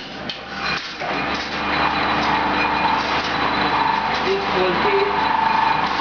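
Steady hum of a running mechanical power press and workshop machinery, with a couple of sharp knocks in the first second.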